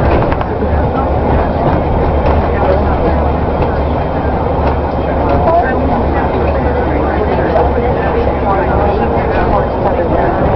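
Inside a moving bus: the engine and road noise make a steady low drone, with indistinct passenger voices over it.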